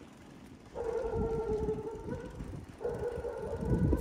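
Bicycle brakes squealing twice, each a steady high squeal lasting over a second, over the rumble of tyres rolling on a rough road.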